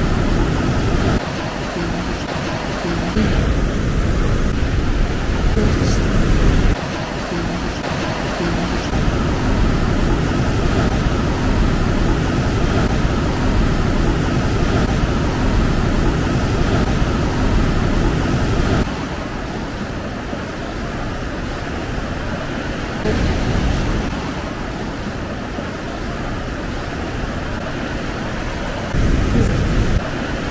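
Ocean surf breaking and washing over rocky lava shoreline, a steady deep rush of water whose level jumps up or down abruptly several times.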